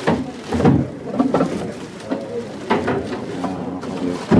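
Black plastic garbage bag rustling as hands pull it open, over low, indistinct voices.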